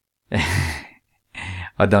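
A man's loud sigh, about half a second long, followed by a shorter breath, coming just after his laugh.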